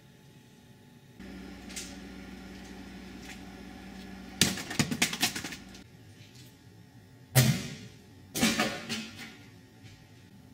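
A run of quick knocks and clatters about four and a half seconds in, a single loud sharp knock about three seconds later, and another clattering run about a second after that.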